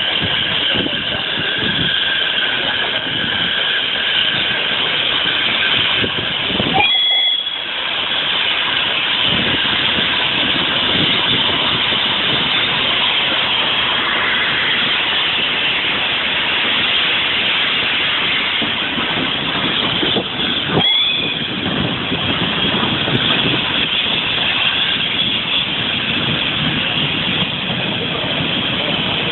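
A steam train top-and-tailed by the tank locomotives Hunslet 3163 'Sapper' and Peckett 1370 running past at low speed: a steady hiss of steam over the rumble of the engines and coaches going by.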